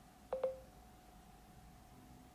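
Android phone playing a short two-note electronic beep about a third of a second in, as Google voice input stops listening.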